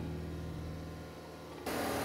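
Faint steady hum, then about one and a half seconds in a preheated oven's steady running noise starts abruptly and holds; the oven is rather noisy.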